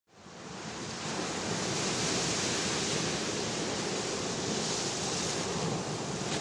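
Steady rushing sound of ocean surf, fading in over the first second and then holding level.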